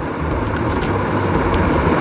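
Steady background noise with a low hum, slowly growing a little louder.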